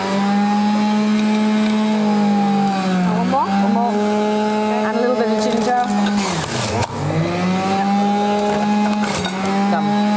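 Electric juicer running on its high-speed setting, a loud steady motor whine. Twice, about three and seven seconds in, the pitch sags and then climbs back as carrot and apple are pressed down the feed chute and shredded.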